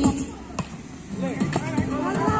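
A volleyball is struck by a player's hands with one sharp slap about half a second in. Players' voices call out after it.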